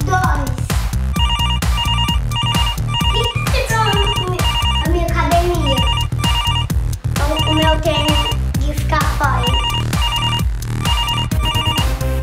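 A mobile phone ringing: an electronic ringtone of short, evenly spaced beeps repeating in runs, starting about a second in, over background music.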